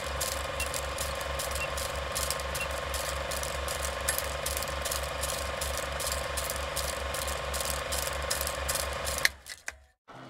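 Movie film projector running: a steady mechanical clatter of about five clicks a second over a constant hum, cutting off abruptly near the end.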